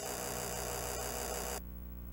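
Cassette playback noise: loud static hiss over a steady electrical hum. The hiss cuts off suddenly about one and a half seconds in, and the hum carries on.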